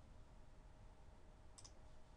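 Near silence with a faint computer mouse click about one and a half seconds in.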